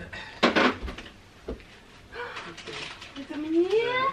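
A short, loud rustling burst about half a second in and a single knock, then voices, the last one a drawn-out rising call.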